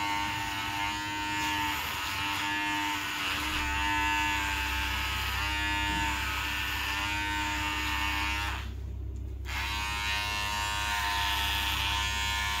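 Cordless electric hair clippers buzzing steadily as they cut a man's hair. The buzz briefly goes quieter for about a second near nine seconds in, then resumes.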